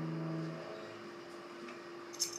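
Acoustic guitar's last strummed chord ringing out and fading away within the first second, leaving a faint steady hum.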